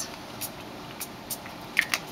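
A short spritz from a small pump spray bottle of craft ink ends right at the start, then a few light clicks and taps from the bottles being handled.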